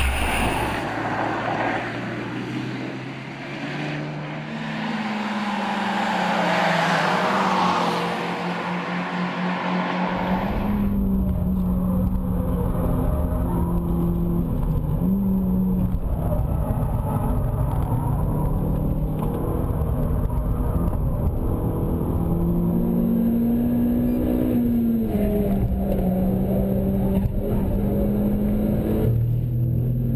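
Renault Sport hatchback four-cylinder engines driven hard around a circuit, recorded by cameras on the car body. For the first ten seconds the white Mégane R.S. is heard under strong wind and road noise, its engine pitch climbing. An abrupt cut then brings a Clio R.S.'s engine, with a deep rumble and pitch rising and dropping with throttle and gear changes.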